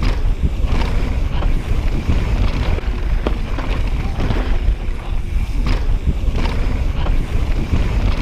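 Wind buffeting a chest-mounted camera's microphone as a mountain bike descends a dirt singletrack at speed, a heavy steady rumble. Frequent sharp clicks and knocks from the bike running over bumps come through it.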